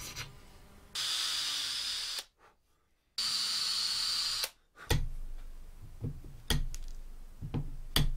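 Cordless drill boring small side-dot holes into the edge of an ebony fretboard: two runs of a bit over a second each with a short gap between. Then a few sharp snaps about a second apart as end nippers clip the side dots.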